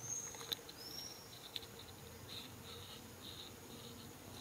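Outdoor forest ambience: faint insects chirping in short repeated pulses, mostly in the second half, with two brief high whistles near the start and a few light clicks.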